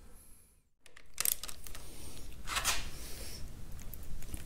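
Faint metallic clicks and scrapes of a socket wrench on the injection pump hold-down bolts, after a brief dead gap, with two sharper clicks about one and two and a half seconds in.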